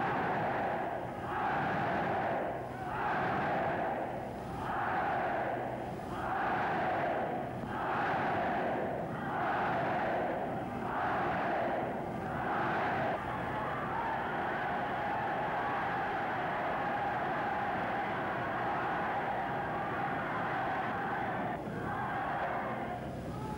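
A huge rally crowd in a hall shouting in unison, one chanted shout about every second and a half, which after about thirteen seconds merges into a steady roar of cheering.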